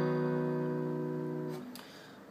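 A B-over-D-sharp (B/D#) chord on a steel-string acoustic guitar ringing out and slowly fading, then damped short near the end.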